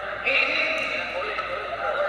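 A man's voice announcing, probably over a public-address system, with a bright steady background noise in the hall.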